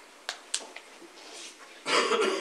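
Quiet meeting-room hush with two small clicks early on, then a person's cough breaking out near the end.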